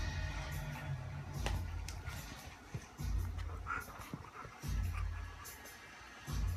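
Music from a television soundtrack with a deep pulse about every second and a half. Over it come the sounds of a Yorkshire terrier puppy and a German shepherd playing close together, the puppy licking at the larger dog.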